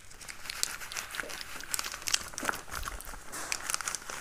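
Yellow rubber glove rubbing back and forth over a clear plastic sheet laid on paper, making a dense, irregular crinkling and crackling.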